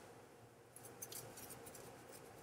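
Near silence: faint room tone with a quick scatter of light, crisp ticks in the second half.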